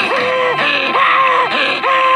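SpongeBob SquarePants' cartoon voice wailing and sobbing: a string of loud, drawn-out cries, each holding a high pitch for about half a second before breaking off, roughly three in two seconds.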